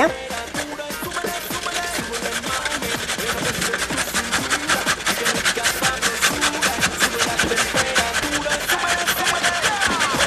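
Carrot being grated on a four-sided metal box grater: quick, repeated rasping strokes. Background music plays underneath.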